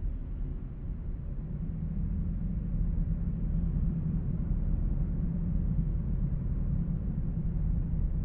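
A steady low rumble with no clear beat or melody, growing a little louder about two seconds in.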